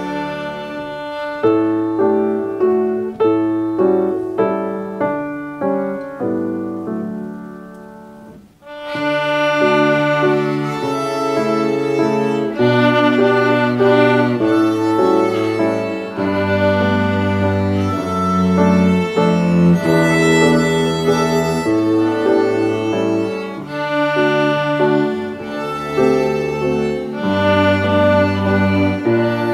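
Two violins playing a waltz in duet over a backing accompaniment with low bass notes. The first several seconds are a lighter passage of short notes that each fade away. After a brief break about eight seconds in, a fuller, louder passage follows.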